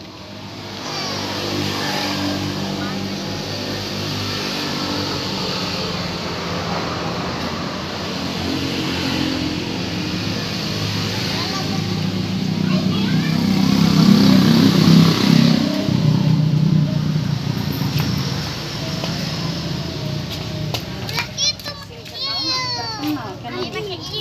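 A motor vehicle engine running steadily nearby with a low hum, growing louder around the middle and fading after, over children's chatter; children's voices come through clearly near the end.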